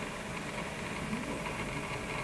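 Steady, fairly quiet background hiss and low rumble with no distinct events.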